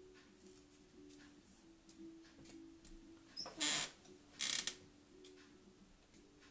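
Paintbrush dabbing lightly on a canvas, a faint tap about every half second. Two short rushing noises a little over halfway in.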